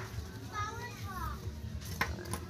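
A child's voice in the background: one short, high, gliding call about half a second in, over a low steady hum.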